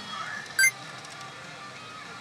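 e花の慶次裂 pachinko machine playing its game music and effects, with one short, bright electronic chime about half a second in.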